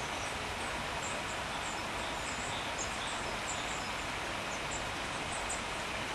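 Steady outdoor background hiss at the water's edge, with faint, short, high bird chirps scattered through it.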